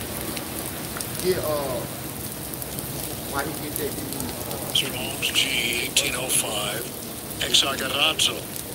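Steady rain falling on a wet street and pavement, an even hiss, with brief, indistinct murmured voices now and then.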